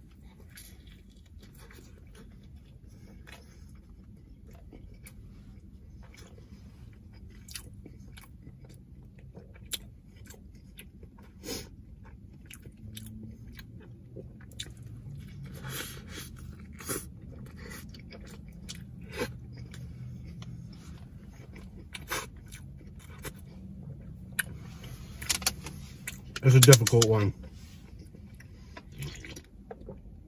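Close-miked chewing of a mouthful of bread and meat, with scattered wet mouth clicks and lip smacks. A short burst of voice comes a few seconds before the end.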